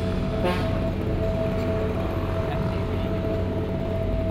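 Street ambience: a steady low traffic rumble with indistinct voices and a steady held tone.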